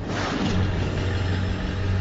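A car engine running with a steady low rumble, with a rushing hiss over it.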